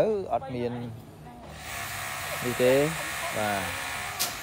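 Brief speech, with a steady hissing noise that comes in about one and a half seconds in and carries on under the voices.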